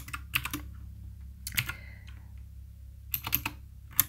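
Computer keyboard typing in three short bursts of keystrokes, with quiet pauses between them.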